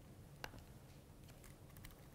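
Faint laptop keyboard clicks: one sharper click about half a second in, then a run of light taps near the end, over a low room hum.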